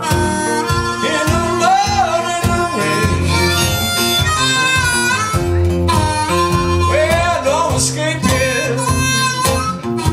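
Live acoustic blues: a steel-string acoustic guitar strummed in a steady rhythm, with a long-held, bending melody line played over it.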